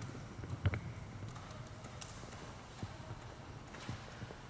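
A low steady hum with a few faint, scattered knocks.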